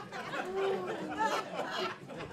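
Comedy club audience reacting to a joke: overlapping voices chattering and laughing, quieter than the comedian's talk.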